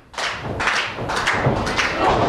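Several dull thuds on a wrestling ring's mat as wrestlers move and strike.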